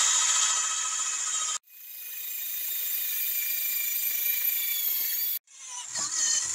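Small Warrior electric drill whining as a 3/16-inch twist bit, described as pretty dull, bores a pilot hole through flattened copper pipe. It runs in spurts: it stops about a second and a half in, starts again and builds up over a second, runs steadily, then stops briefly near the end before starting once more.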